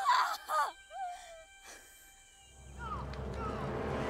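A woman's anguished wailing cry, half laugh and half sob, lasting about a second and a half. After a short lull, a low rumble swells up in the last second or so.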